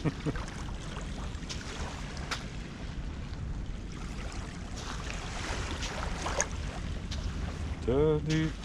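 Wind rumbling on the microphone, with a few crunching footsteps on wet gritty sand and shards.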